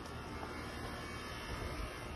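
Steady outdoor background noise: a low rumble with a faint hiss and no distinct events.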